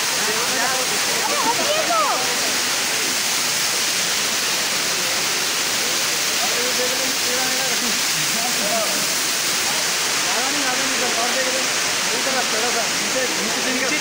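Steady, even rush of a waterfall, with several people's voices talking faintly under it.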